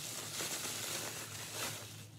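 Bubble wrap crinkling and rustling steadily as it is pulled off a handbag.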